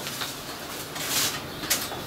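Plastic bread bag rustling and crinkling as slices of bread are pulled out of it, loudest about a second in.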